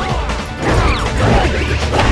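Cartoon fight sound effects over film music: a busy run of smashing and crashing hits, getting louder about half a second in, as a giant wooden mallet strikes.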